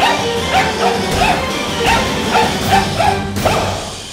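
A small dog barking in a run of short, high yaps, about seven in quick succession, at a toy robotic spider, over background music.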